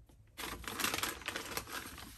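Paper bag crackling and rustling as a hand rummages inside it, a dense run of fine crinkles and clicks starting about half a second in and fading near the end.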